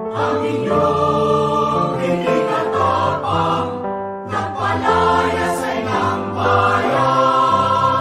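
Choral music: a choir singing held chords.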